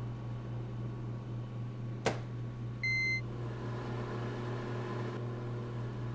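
Microwave oven running with a steady low hum. A sharp click comes about two seconds in, followed about a second later by a single short beep.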